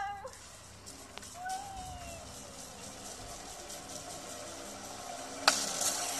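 A playground zip wire in use: a low, steady run of the trolley along the cable, a short gliding voice-like squeal about a second and a half in, and a sharp knock near the end.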